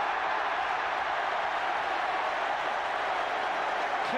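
Football stadium crowd noise, a steady din from thousands of spectators as they react to a shot that has just hit the post.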